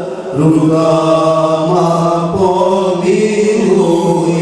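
Male voices singing a devotional chant into microphones through a PA system, in long held notes that slide from pitch to pitch, with a short break for breath just after the start.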